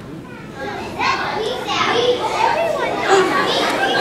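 Many young children chattering at once, the hubbub swelling about a second in.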